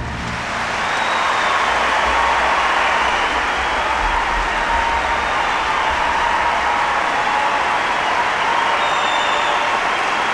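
Large concert-hall audience applauding steadily, swelling over the first couple of seconds.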